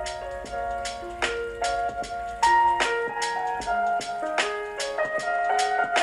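Music with a steady drum beat and a melody of held notes, played loud through the Lenovo ThinkPad X13 (2023) laptop's upward-firing built-in speakers. The sound is very clear but has almost no low-end bass.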